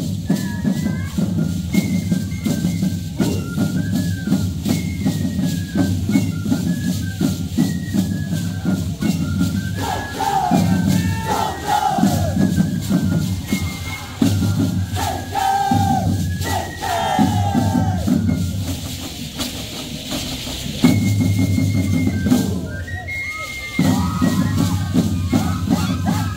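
Live Andean dance music: a high flute melody over a steady drum beat, with the shaking rattle of the dancers' shacsha seed-pod leg rattles. Several times in the middle, voices shout out together.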